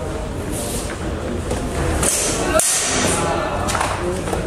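Background chatter of spectators echoing in a large sports hall, with a brief thump about two and a half seconds in.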